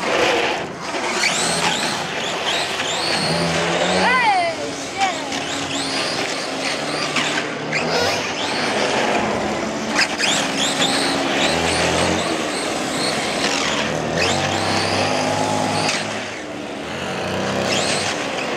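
1/5-scale radio-controlled buggy driving on asphalt, its motor revving up and down repeatedly, with voices over it.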